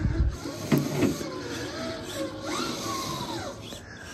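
Redcat Gen 8 V2 RC crawler's electric motor and gear drivetrain whining, the pitch rising and falling as it crawls down off a brick pile under changing throttle. The whine is the noisy gear sound the owner calls just a characteristic of these trucks.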